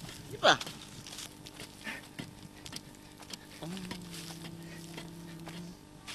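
Faint, irregular knocks and scrapes of a hoe digging into clay soil, after one short shouted word about half a second in. Near the end a steady low hum lasts about two seconds.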